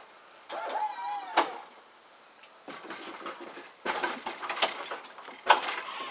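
Hydraulic lowrider suspension of a 1993 Cadillac Fleetwood being worked: a wavering squeak about a second in, then irregular clacks and clunks as the car's corners are raised and dropped, the loudest knock near the end.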